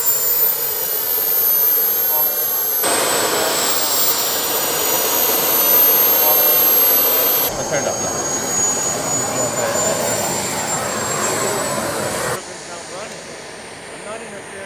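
Model jet turbines of a radio-controlled F-4 Phantom running on the ground at low power: a steady hiss with a high turbine whine that sags slightly, then rises slightly in pitch. The sound jumps abruptly at a few edits, and it is much quieter for the last second or two.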